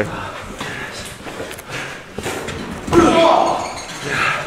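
A heavy thud about three seconds in, typical of a wrestler's body hitting the ring canvas, with a voice shouting right after it and low voices around it in a large hall.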